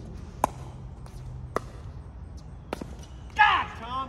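A doubles pickleball rally: three sharp pops of a plastic pickleball off paddles, about a second apart, the last one weaker. A loud shout from a player comes near the end.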